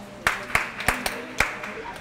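Sharp hand claps, about three a second, over a low murmur of people talking, a call for the room's attention.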